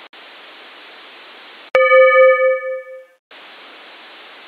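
A bell struck once, about two seconds in, ringing with a clear tone and fading away over about a second and a half. It is heard over a steady hiss, as through a telephone line, and the sound cuts out briefly just after the bell dies.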